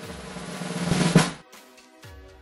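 Snare drum roll growing louder, ending in a final hit a little over a second in and then cutting off.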